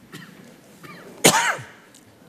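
A man clears his throat once: a short, loud burst about a second and a quarter in.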